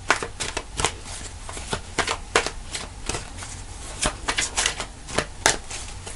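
A tarot deck being shuffled by hand: a steady run of quick, irregular card clicks and slaps.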